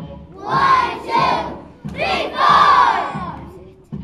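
A group of young children chanting loudly in unison, in three bursts: two short ones, then a longer one.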